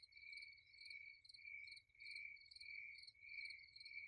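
Faint, steady insect chirping: a high pulsing trill that repeats two or three times a second.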